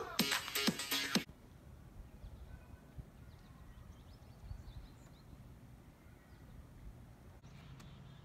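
The final second of the Gatorade NBA 2-ball game's intro audio: a loud burst of game music that cuts off abruptly about a second in. Then only a faint, steady outdoor background remains.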